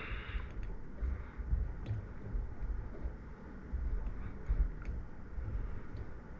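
Quiet handling sounds of fly tying at a vise: irregular soft low bumps and a few faint light clicks as the hands work the thread and materials on the hook.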